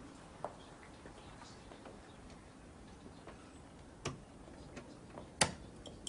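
Quiet room tone with a few faint, irregular clicks and small knocks, the sharpest near the end.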